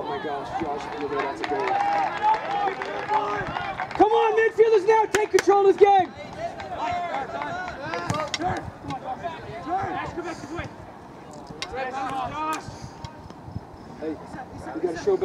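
Several people shouting at once. About four seconds in comes a loud, drawn-out shout that lasts around two seconds, followed by more scattered calls.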